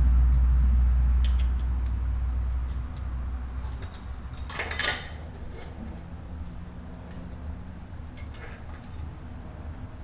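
Light metallic clicks and clinks as an Allen key works the bolts out of a motorcycle's aluminium sprocket cover, with a louder short metallic clatter about five seconds in as the cover comes loose. A low rumble sits under the first three to four seconds.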